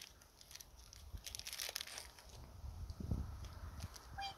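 Faint rustling and crinkling, with a soft thump about three seconds in.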